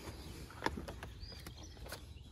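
Faint outdoor background with a short bird chirp just past halfway, and a couple of light clicks or knocks, one early and one near the end.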